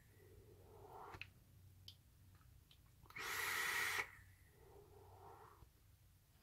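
A person vaping a freshly dripped e-cigarette: a one-second hiss of air drawn through the atomiser about three seconds in, with softer exhaled breaths before and after it. A few faint clicks come in the first two seconds.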